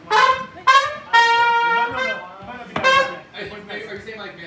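Horn section of trumpet, trombone and saxophone playing a riff of short stabs, with one longer held note a little after the first second.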